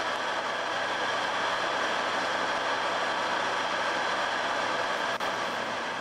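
Metal lathe running steadily while its cutting tool faces the front of a rifle action, a constant whir with a single faint click about five seconds in.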